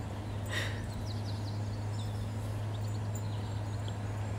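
Outdoor garden ambience: a steady low hum with faint, short bird chirps scattered through it, and a brief rush of noise about half a second in.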